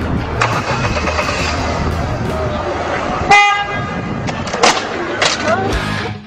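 Street noise with people's voices and a car in front, and a car horn sounding once, briefly, about three seconds in.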